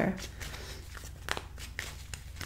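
Tarot cards being handled: a few light flicks and rustles of card stock.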